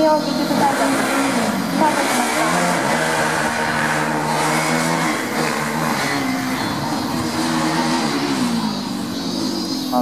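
Student formula race car's engine revving hard as it launches from the start and drives the autocross course, its pitch climbing and dropping again and again with throttle and gear changes.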